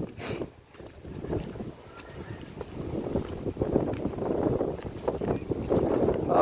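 Wind buffeting the microphone: a low rumble that dips briefly about half a second in, then builds steadily louder.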